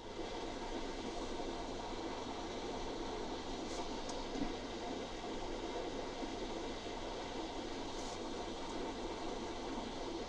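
Faint steady hiss of room tone, with two faint ticks about four and eight seconds in.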